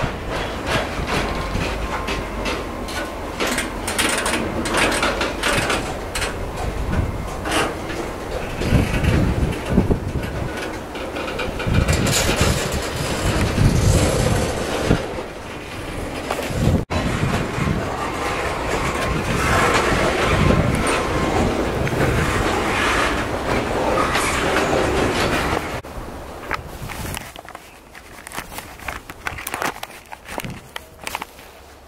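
A freight train of covered hopper cars rolling past at close range: steel wheels rumbling and clattering on the rails, with frequent metallic clanks. The sound drops off over the last few seconds.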